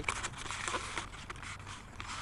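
Faint outdoor background hiss with a few light clicks and rustles.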